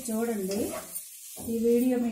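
A spatula stirring and scraping a fry of yard-long beans and grated coconut in a nonstick pot, the food sizzling. The stirring stops briefly about a second in, then resumes.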